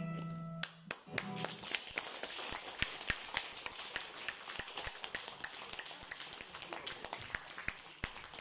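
The last chord of an acoustic guitar rings and stops under a second in, then an audience applauds.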